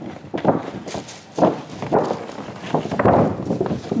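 A large, heavy paper shopping bag of thick, dense paper being handled and pulled open: a run of stiff paper crackles and rustles with a few dull thumps.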